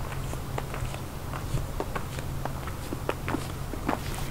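Footsteps: a series of light, irregular clicks over a steady low hum.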